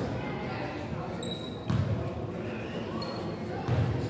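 Basketball bouncing a few times on a hardwood gym floor, in a large gym with voices in the background.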